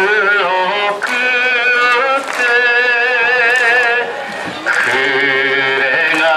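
A man singing a slow song into a handheld microphone, holding long notes with a wide, even vibrato, with short breaks between phrases.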